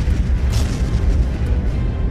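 Explosion sound effect: a steady, deep rumble, with background music.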